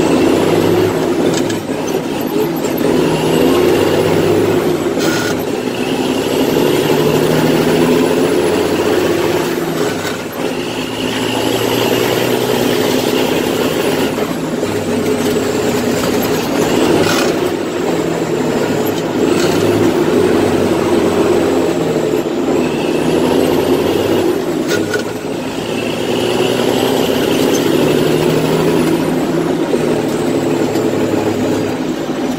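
Heavy diesel truck engine running under load, its note climbing and dropping back every few seconds as the truck works through the gears, with a high whistle rising and falling along with it.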